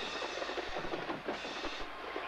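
Marching band percussion playing: a fast run of drum strokes with cymbal crashes.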